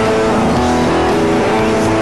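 Electric guitar playing a rock riff of held, ringing notes that change every fraction of a second.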